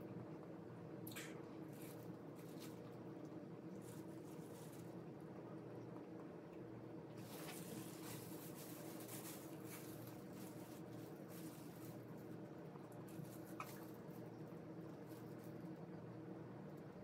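Faint eating sounds: chewing on crispy-skinned roast pig's breast, with small clicks and a denser crackly stretch about halfway through, over a steady low hum.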